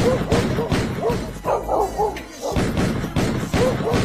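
A string of sharp gunshot sound effects, several a second, over music, mixed with short voice-like cries.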